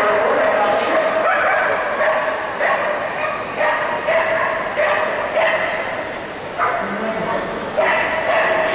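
A dog barking in repeated short, high yips, roughly one every half second to a second, with a brief lull about six seconds in, heard in a large echoing hall over a background of voices.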